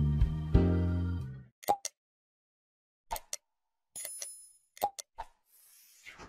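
An intro music sting ends about a second and a half in. It is followed by the sound effects of a subscribe-button animation: a string of short pops and clicks, with a bright bell-like ding near the middle.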